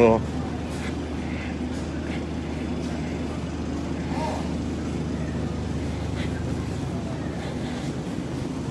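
Steady supermarket background noise: a low hum and even hiss, with faint distant voices now and then.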